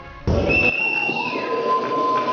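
Long whistles in a large hall, a high one followed by a lower one that is held steadily, each sliding in and out at its ends, over a faint crowd murmur. A thump comes about a quarter second in, as the hall sound starts.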